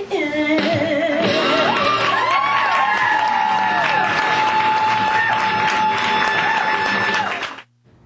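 A woman singing live with accompaniment, ending on one long held high note while audience voices whoop and cheer over it; the sound cuts off suddenly near the end.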